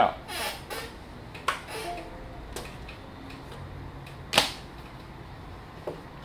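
Surface Pro 3 tablet being unclipped from one magnetic Type Cover and clipped onto another: a few light clicks and knocks, with a sharper snap about four and a half seconds in.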